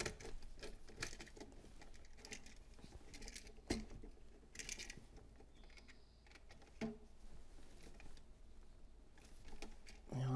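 Faint handling noises of copper wire and a wall switch device being worked at a screw terminal: small scrapes and light clicks throughout, with a sharper click at about four seconds and again at about seven seconds.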